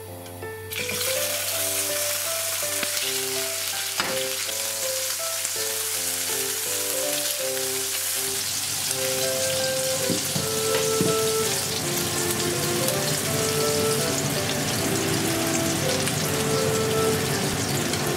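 Garlic and bacon frying in olive oil in a nonstick frying pan: a steady sizzle that starts suddenly about a second in. Soft background music plays over it.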